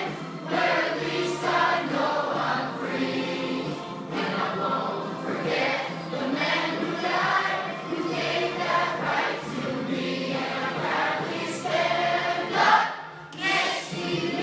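Many voices singing a song together, choir-style, with a short dip in loudness near the end.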